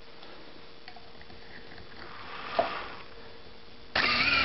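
Small electric motor of a benchtop capper-decapper running with a faint, steady hum, ready for capping. A brief, louder rustle comes about two and a half seconds in.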